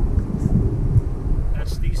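Low, steady rumble of a Dodge Challenger Scat Pack 1320's 6.4-litre HEMI V8 and road noise, heard inside the cabin while cruising on the highway, with a few knocks from a camera being handled.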